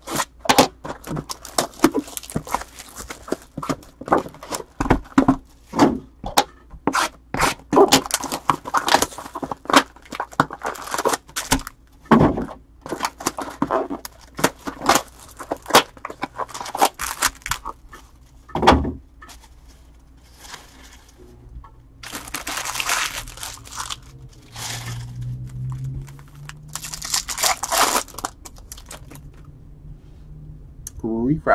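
Cardboard trading-card hobby box torn open and its foil packs handled, with many sharp taps and knocks over roughly the first twenty seconds. Later come two longer bursts of crinkling as a foil card pack is torn open.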